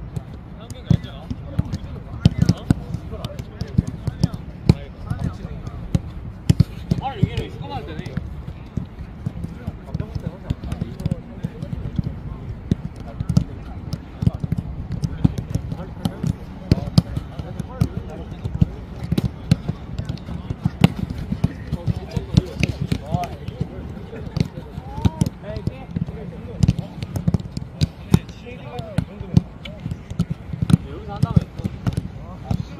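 Footballs being kicked and passed by several players on grass, a dense run of irregular, overlapping thuds.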